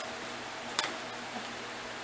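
Quiet room tone with a steady hiss and one short click a little under a second in, a fainter tick after it, as small items are handled.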